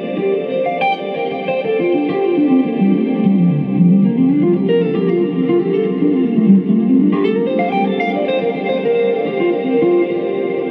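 Telecaster-style electric guitar played through a valve amp with delay and reverb from a Fractal Audio FM3 in the amp's effects loop. Single-note lines run down and back up in pitch several times, each note trailed by repeating echoes that overlap the next.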